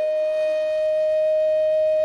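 Instrumental music: a flute holds one long, steady note.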